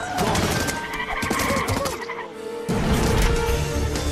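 Animated-film action soundtrack: music with high, wavering squealing cries over it in the first half, then a deep low rumble joins about two and a half seconds in.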